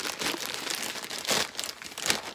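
Plastic mailer bag crinkling as it is pulled open by hand, with a louder crinkle about a second and a half in.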